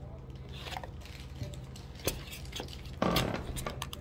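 Close handling noise: scattered light clicks and rustling, with a louder brief rustle about three seconds in, over a steady low hum.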